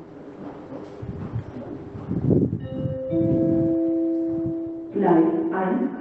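Two-note station announcement chime: a higher note, then a lower note held and fading, after a stretch of low rumbling noise. An automated announcement voice starts near the end.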